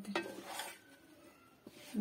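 Wooden spatula stirring cut vegetables in oil in a nonstick pan, a few soft scrapes in the first second.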